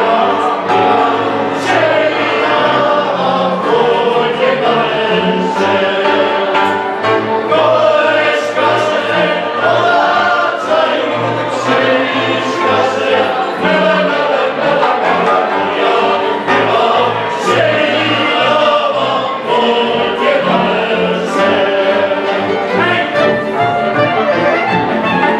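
Several voices singing a folk song together to the accompaniment of a folk string band of fiddles and cello.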